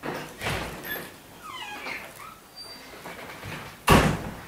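Paper rustling as Bible pages are turned to find a verse, with a short thin squeaky whine about a second and a half in and a sharp knock on the table near the end.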